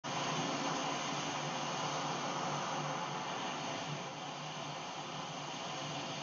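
Sea surf breaking and washing up a sandy beach: a steady rush of noise that eases a little midway.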